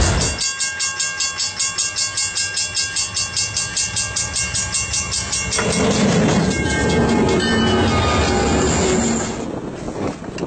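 A railway crossing bell ringing rapidly and evenly for about five seconds, then a locomotive plowing through deep snow, a loud rushing spray of snow over the running of the train.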